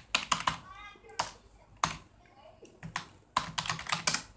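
Computer keyboard being typed on: about eight separate keystrokes, unevenly spaced, with a gap around the middle and a quicker run near the end.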